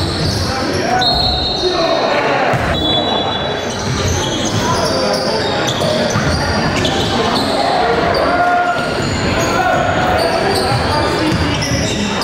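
Live sound of a basketball game in a large, echoing gym: a ball dribbled on the hardwood court, with short high sneaker squeaks and indistinct voices of players and spectators.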